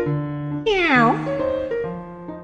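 Piano intro music with a single meow about two-thirds of a second in, its pitch falling over about half a second.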